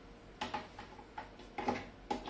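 Several light clicks and knocks of a plastic power plug and cables being handled and plugged into an AC outlet.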